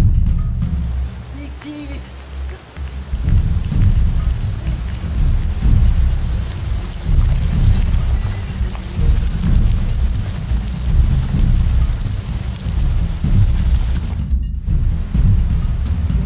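Heavy rain pouring down, with a deep rumble of thunder underneath. The sound drops out briefly near the end.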